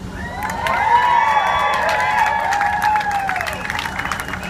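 A crowd cheering, with many voices whooping at once and some scattered clapping. It swells within the first second and dies away near the end.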